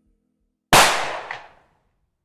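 A single pistol shot, sudden and loud, about two-thirds of a second in, ringing out and fading over about a second.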